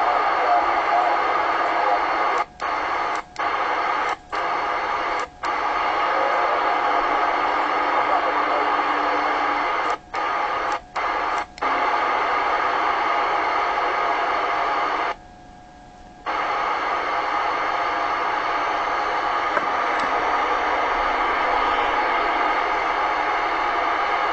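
AM CB radio reception from a President Jackson II's speaker: operators' voices under heavy static and noise. The sound cuts out for a moment several times, and once for about a second.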